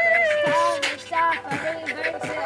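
Live freak-folk music: a high, long-held sung note that glides slightly down and ends just under a second in, with shorter sung phrases over falling kick-like beats about once a second.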